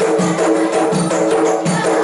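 Percussion-led music: a frame drum and other hand percussion keep a steady quick beat, about two to three strokes a second, over held tones.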